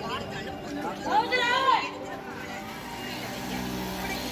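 Street ambience of people chattering and traffic, with a loud voice calling out, rising and falling in pitch, about a second in.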